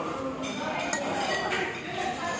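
Metal cutlery clinking against plates, a few light clinks, over the murmur of voices in a busy restaurant.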